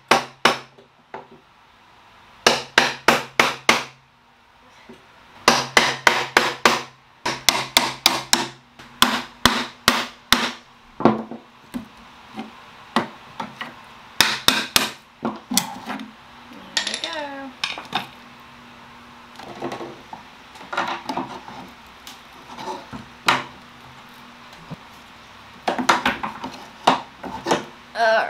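Hammer striking a chisel at the joint of a turned wooden foot on a cedar chest, in quick runs of about five blows a second with pauses between, working the foot loose. A short falling squeak about 17 seconds in.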